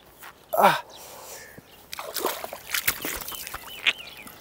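A man lets out one long pained groan that falls in pitch, then scoops river water with his hands and splashes it onto his face, a run of small splashes. He is rinsing a six-spotted ground beetle's acrid defensive spray from his eyes.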